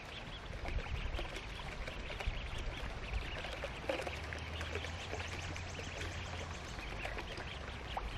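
A brood of mallard ducklings peeping: a steady chatter of many short, high calls, with a few lower calls among them.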